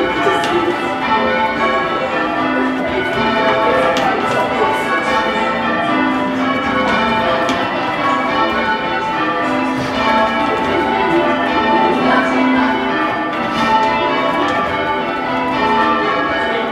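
A ring of six C. & G. Mears bells of 1846, tenor in A, being change-rung full circle, heard from inside the ground-floor ringing chamber: the bells strike one after another in a steady, unbroken rhythm.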